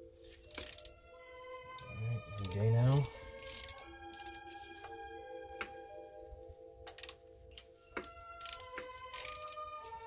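Scattered sharp clicks of a 3/8-inch ratchet and long socket extension being worked on a spark plug, over music with held notes. A short low vocal sound, the loudest thing, comes a little after two seconds in.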